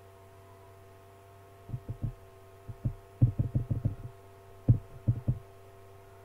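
Steady electrical hum, with irregular clusters of short, low, dull thumps from about two seconds in to about five and a half seconds. The loudest thumps come a little after three seconds and near five seconds.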